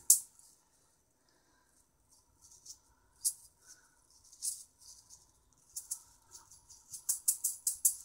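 Chainmail juggling balls jingling in the hands: scattered short metallic rattles as the balls are gathered and handled, thickening into a quick run of jingles near the end as the juggling starts again.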